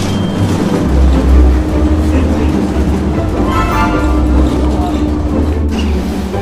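Bus engine and road noise droning low inside the cabin as the bus drives, getting heavier about a second in, with background music over it.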